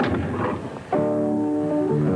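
A piano chord struck about a second in and left ringing, on a transposing piano whose keyboard is shifted by a lever to play in another key.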